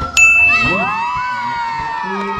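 A basketball strikes the metal rim of an outdoor hoop with a sudden clang, and the rim rings on for a couple of seconds as it fades.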